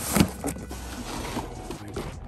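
Cardboard box flaps being pulled open by hand: a sharp scrape of cardboard right at the start, then a stretch of rustling and scraping cardboard.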